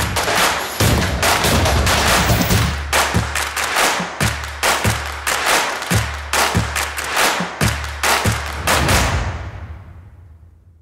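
Loud music driven by dense, heavy percussion: rapid sharp hits over a pounding low beat. It fades out over the last second or so.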